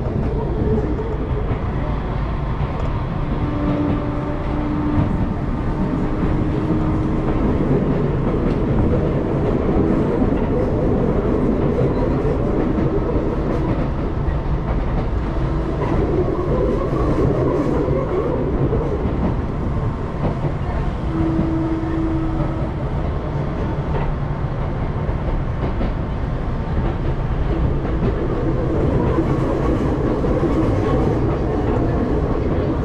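Hakone Tozan Railway electric train running, heard from inside the carriage: a steady rumble of wheels on rails with some clickety-clack. A few short steady hums come and go along the way.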